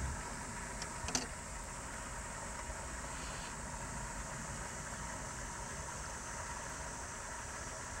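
Steady low background hum and hiss with no clear source, and a faint click about a second in.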